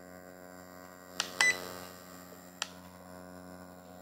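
Ultrasonic skin scrubber switched on and running with a steady electric hum, with short button beeps as its modes are changed: two in quick succession about a second in and one more just past halfway.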